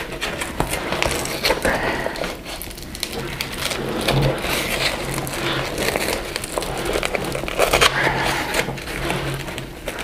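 Nylon backpack fabric rustling and scraping as a stiff plastic frame sheet is pushed down into its sleeve in the pack's back panel, with many small irregular handling clicks and knocks.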